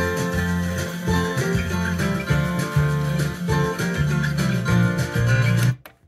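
Music played back from a freshly recorded MiniDisc on a Sony MXD-D3 CD/MiniDisc deck. It stops abruptly near the end.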